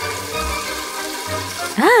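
A toilet flushing, water rushing into the bowl, under background music.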